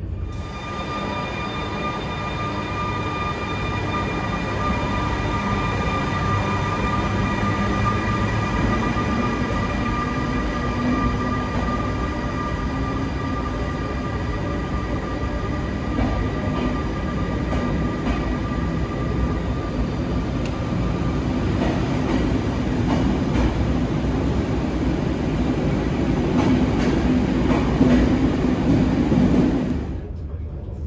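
Electric train running, with a steady high whine of several tones over a low rolling rumble. The whine fades out about two-thirds of the way through, and the rumble grows louder near the end.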